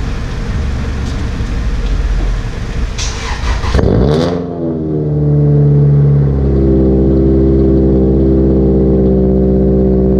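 A Toyota Celica's four-cylinder engine being cold-started. After a rushing noise, the starter clatters briefly about three seconds in. The engine catches about four seconds in, flares up, then settles into a steady fast cold idle.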